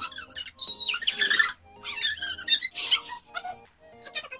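Background music under loud, high-pitched squealing laughter from a group of young women, in bursts about a second in and again from about two to three seconds in.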